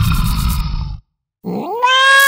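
A cat's meow: one long call that swoops up in pitch and then holds, beginning about a second and a half in after a short silence. Before it, music cuts off suddenly about a second in.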